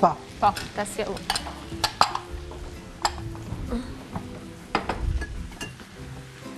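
Scattered clicks and knocks of cooking utensils stirring and scraping in a frying pan of chopped tomatoes and vegetables, with light sizzling under soft background music.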